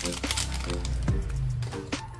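Background music with short repeated pitched notes over a low bass, with light crinkling clicks from a foil drink-powder sachet being squeezed empty.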